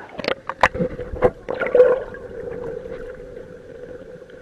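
Pool water splashing and gurgling over a waterproof action camera as it dips through the surface, with several sharp splashes in the first two seconds. After that comes the muffled, steady hum of the camera underwater.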